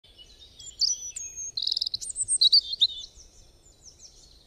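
Birds chirping and singing: many quick overlapping chirps and trills, busiest in the middle and dying down near the end.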